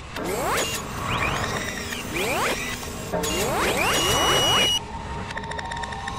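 Sound-design effects for an animated logo: a series of sweeping, rising whooshes that start suddenly, with a steady high tone added partway through, dropping in level near the end.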